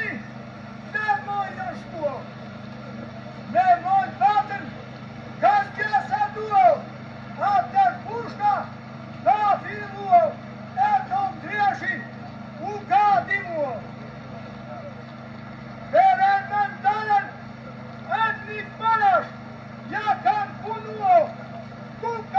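A man's loud chanted Albanian funeral lament (vajtim), in short arching phrases of about a second that rise and fall, separated by brief pauses. A steady low hum runs underneath; the track is a re-recording of a screen playback.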